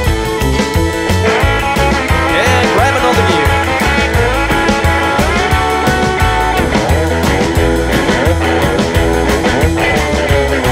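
Instrumental break in a country-rockabilly song: guitar playing over a steady, fast bass-and-drum beat, with sliding guitar notes.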